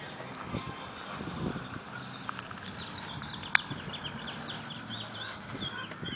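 Outdoor ambience in an olive grove: footsteps on dry leaf litter in the first half, a sharp click about three and a half seconds in, and small birds chirping in quick runs of short high notes in the second half.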